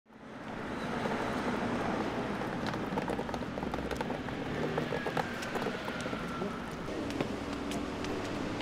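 Street ambience: a steady hum of traffic, fading in at the start, with scattered sharp clicks and a faint falling whine about midway.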